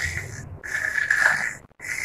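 A child imitating snoring: three long, breathy snorts about a second apart.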